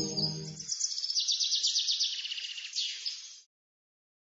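Ambient background music with steady held tones stops under a second in, leaving fast, high chirping birdsong that carries on and cuts off suddenly about three and a half seconds in.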